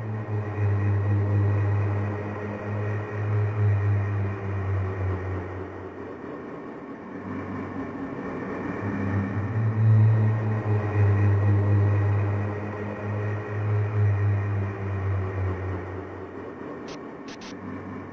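Instrumental intro of a dark rock song: a low drone swelling and fading with held tones above it, no drums, and a few faint clicks near the end.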